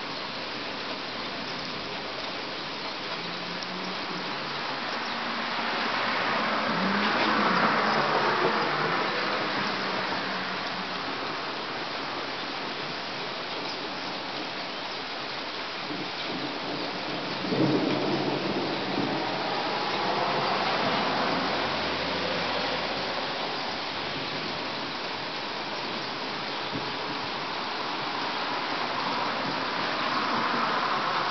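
Steady rain falling during a thunderstorm, with tyres hissing on the wet road as cars pass, swelling about seven seconds in and again near the end. About seventeen seconds in a sudden louder sound starts and fades over a few seconds.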